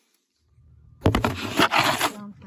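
Near silence, then about a second in a loud, rough rubbing and rustling right on the microphone as the phone is handled, opening with a couple of knocks.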